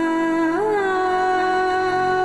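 Dramatic background score carried by a wordless humming voice: long held notes, with a scoop up to a higher note about half a second in, over a soft sustained musical backing.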